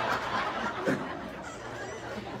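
Laughter right after a joke's punchline, fading away, with a short cackle about a second in.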